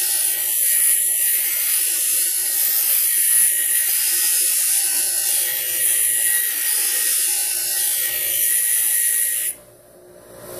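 Black & Decker bench grinder grinding a bevel on a small metal piece held in vise grips: a steady harsh hiss of the wheel biting the metal. About nine and a half seconds in, the metal comes off the wheel and the grinding cuts out suddenly, leaving the quieter sound of the grinder still spinning.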